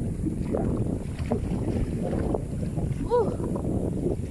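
Wind buffeting the microphone with a steady, rough low rumble, on a windy seashore. A short voiced "uh" comes near the end.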